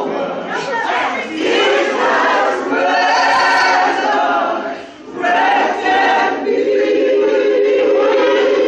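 Gospel choir singing in full voice. The singing breaks off briefly about five seconds in, then the choir comes back on a long held chord.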